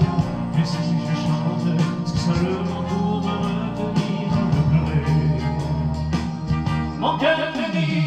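A man singing into a handheld microphone over instrumental backing music.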